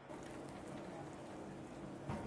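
Faint background noise of a large exhibition hall: a steady low hum under an even wash of noise.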